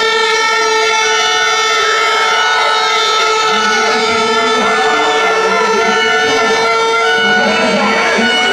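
A horn held on one long, steady note, with spectators shouting and cheering over it from about halfway through.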